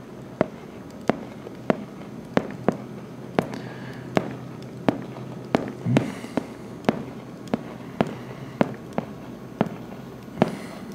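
Pen tip tapping on the hard surface of an interactive whiteboard while numbers are written, a sharp click about every half second over a faint low hum.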